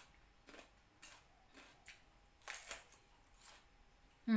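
Faint chewing: a handful of short, soft crunches as a raw green vegetable is bitten and chewed, the loudest about two and a half seconds in, against near silence.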